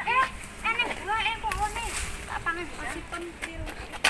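Voices of several people talking, with no single speaker close to the microphone.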